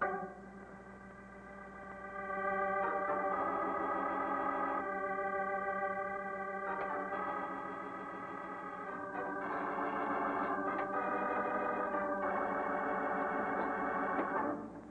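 Organ music as a scene-change bridge: held chords that change every one to three seconds, swelling up about two seconds in.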